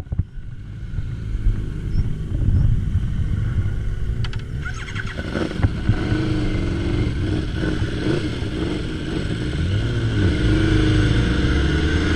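Motorcycle engines pulling away and accelerating, their pitch rising and falling through gear changes over a low rumble and rushing air, growing louder toward the end.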